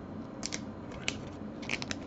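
Glossy trading cards being handled and slid against one another in the fingers: a few short clicks and scrapes, the busiest cluster near the end, over a steady low hum.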